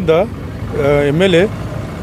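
A man speaking into a hand-held interview microphone in short phrases, over a steady low background rumble.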